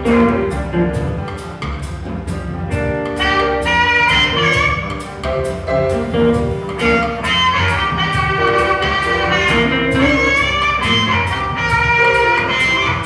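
Live electric blues band playing: drums on a steady beat of about three strokes a second under electric guitars and keyboard, with sustained lead lines from blues harp (harmonica) and saxophone on top.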